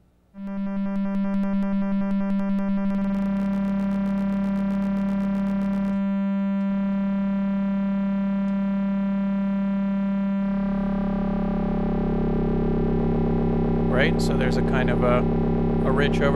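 Eurorack modular synthesizer patch, a sine wave reshaped by the Pittsburgh Modular Flamingo harmonic interpolation module, sounding a steady pitched drone that switches on about half a second in. Its overtones change in steps about three, six and ten seconds in, the tone growing fuller and deeper toward the end as the harmonic structure is modulated.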